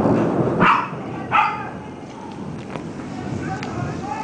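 A dog barking twice in quick succession, about a second in.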